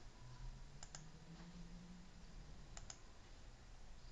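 Computer mouse button double-clicked twice, two quick clicks about a second in and two more near the three-second mark, over a faint low hum.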